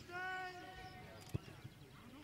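A player or spectator shouting one long, steady call across the football pitch, followed about a second later by a single sharp thump and a fainter one.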